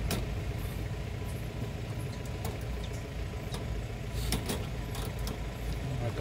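A steady low rumble with a few sharp metallic clicks and rattles, one near the start, others in the middle and a close pair past the middle, as hands work at the wire fastenings of a wire-mesh cage.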